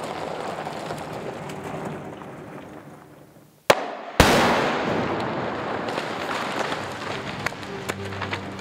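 Explosive charge detonating in a danger tree: a sharp crack, then about half a second later a loud blast that fades away slowly as debris comes down. The background sound dies away just before the shot.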